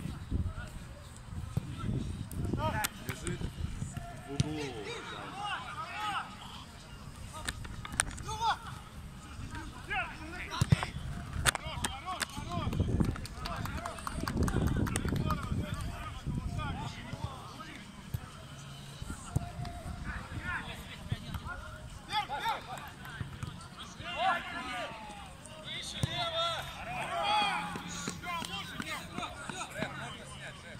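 Men's voices shouting and calling out across an outdoor football pitch during play, over a low rumbling background, with a few sharp knocks about eight to twelve seconds in.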